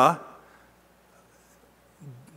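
A man's spoken word trailing off with a short room echo, then a pause of quiet room tone.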